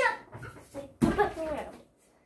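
A child landing on the floor with a thump about a second in as she drops off a home gymnastics bar, together with a short wordless vocal sound from her.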